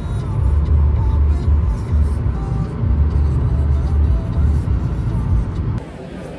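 Cabin noise of a Fiat 500 driving at about 90 km/h: a low, uneven road and engine rumble with music playing over it. It cuts off abruptly near the end.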